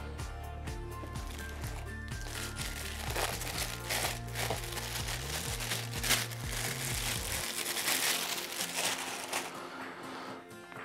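Clear plastic bag crinkling as a camera body is handled and unwrapped from it, over background music whose bass drops out about seven seconds in.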